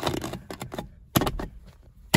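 Plastic horn-button centre pad being pressed and snapped into a steering wheel: a few clicks and knocks, the loudest about a second in.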